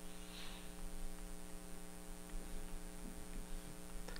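Faint, steady electrical mains hum with a buzzy stack of overtones, picked up by the recording microphone.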